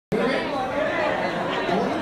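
Speech only: indistinct voices talking, with background chatter.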